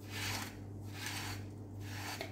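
Toasted, butter-coated kataifi shreds with chopped almonds and walnuts rustling and crackling dryly as a silicone spatula stirs them in a pan, in about three sweeps, over a low steady hum. The dry crackle is the sign that the pastry has toasted crisp and golden.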